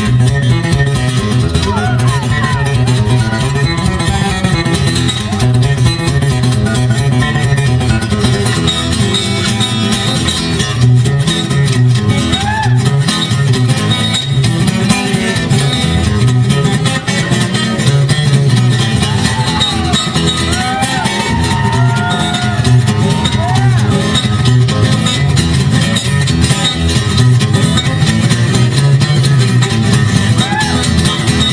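Solo fingerstyle acoustic guitar playing a 12-bar blues in E, a steady pulsing bass line under a melody, with several notes bending up in pitch and back down.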